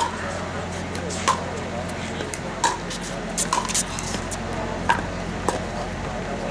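A pickleball rally: about six sharp hollow pocks of paddles hitting the perforated plastic ball, irregularly spaced and coming a little faster in the middle.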